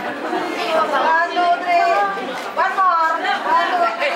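Overlapping voices chattering in a large hall.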